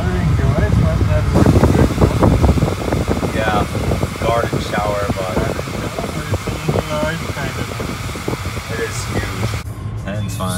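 Steady low rumble of road and engine noise inside a moving car. It gets louder for a second or so near the start, and an indistinct voice is heard over it in the middle.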